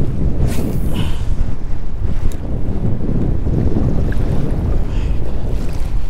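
Steady, loud wind rumbling on the microphone over choppy water lapping close by.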